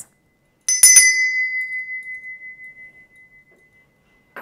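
Small brass hand bell struck twice in quick succession, then a single clear tone ringing on and fading slowly with a slight pulse, rung to cleanse the space.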